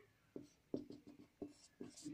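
Marker pen writing on a white sheet: a faint run of about five short separate strokes, as a row of short dashes is drawn.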